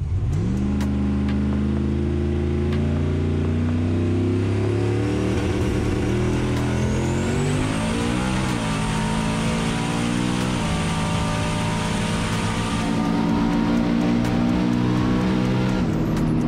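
LS V8 in a turbocharged drag Mustang under hard acceleration, heard from inside the cabin, its note climbing and then stepping down in pitch twice, about eight and eleven seconds in. A high whine comes in about six seconds in and stops about thirteen seconds in.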